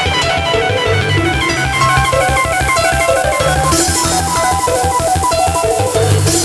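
Makina-style electronic dance music played from vinyl in a DJ mix, with a steady fast beat, pulsing bass and a repeating stepping lead melody.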